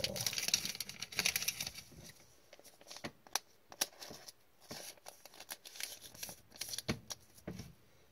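A thin plastic card sleeve rustling and crinkling as a trading card is handled and slid into it, densest in the first second or so. After that come a few light clicks and taps of card and plastic.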